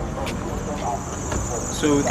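Busy street ambience: a steady wash of traffic and distant voices, with a steady high-pitched buzz that grows stronger about a second in.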